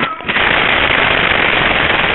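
The Hot Wheels Video Racer toy car rolling across a hardwood floor, heard through its own built-in microphone as a loud, harsh, steady rushing rattle that starts a moment in.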